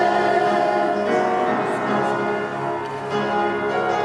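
Worship team of several voices singing a praise song together, holding long notes with no break.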